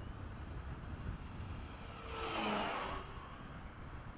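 RC Gee Bee model airplane making a fast low pass: its motor and propeller noise swells to a peak about two seconds in and fades, the whine dropping in pitch as it goes by.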